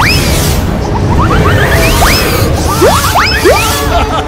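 Loud, busy cartoon-battle sound effects: whooshing blasts with many quick rising whistle-like sweeps, layered over music.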